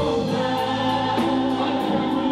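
Live gospel praise-and-worship singing by a group of singers on microphones, holding notes in harmony over a steady beat.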